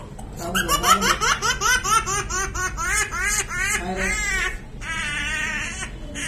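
Young child screaming and crying while restrained for removal of a foreign body from the nose: a fast run of short, high-pitched cries, about four or five a second, then one long wavering wail near the end.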